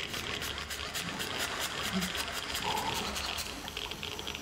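Hand-crank dynamo flashlight whirring as it is wound, a rapid, even pulsing.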